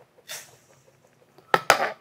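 A third cup of sugar tipped from a metal measuring cup into a stainless steel mixing bowl gives a brief soft hiss. About one and a half seconds in come a few sharp clinks as the metal measuring cup is set back into the sugar canister.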